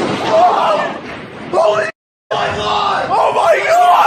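A nearby thunderclap rumbling on after a lightning strike, with people yelling in alarm over it; it stops dead about two seconds in, and more excited shouting follows.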